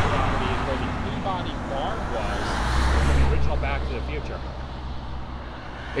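Road traffic passing: tyre noise fading at first, then a vehicle's engine hum and tyre noise swelling about halfway through and fading again.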